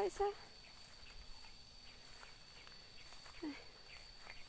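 Faint footsteps through leafy undergrowth, with a short pitched call right at the start and another a little before the end.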